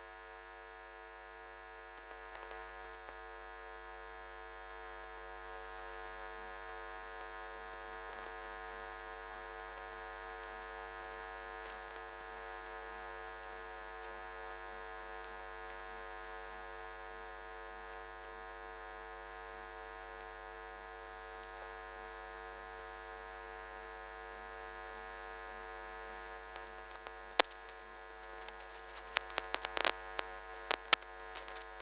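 Steady electrical hum made of many fixed tones, unchanging throughout, with a few sharp clicks near the end.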